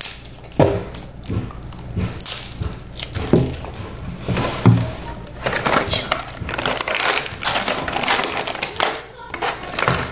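Close-miked eating and handling of a Lunchables snack: a few sharp crunches and knocks in the first half, then a few seconds of dense plastic crinkling as a small plastic cup from the tray is opened.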